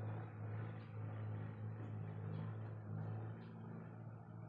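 A woman drinking a glass of thick curd (dahi) in gulps, with swallowing and mouth sounds, over a steady low hum.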